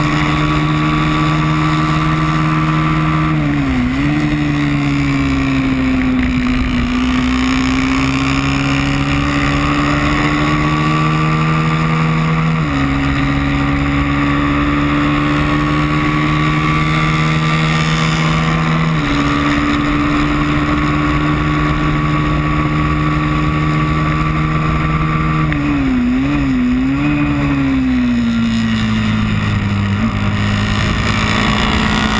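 Moto3 racing motorcycle engine heard onboard, held at high revs with a steady hiss of wind over the microphone. The engine note dips briefly about four seconds in, steps abruptly twice midway as the bike changes gear, and wavers and falls near the end.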